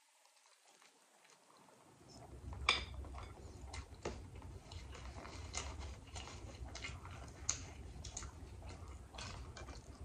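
Close-miked chewing of a mouthful of grinder sandwich on crusty French bread. Many small clicks and crackles over a low rumble begin about two seconds in, after a nearly silent start.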